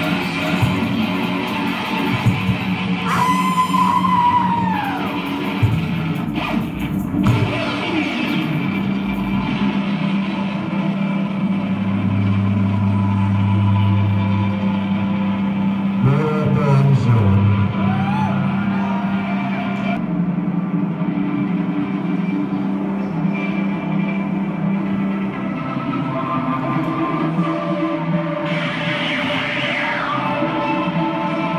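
Live amplified experimental rock performance: a sustained electric-guitar drone over a steady low hum, with a voice wailing into the microphone in a few long falling glides.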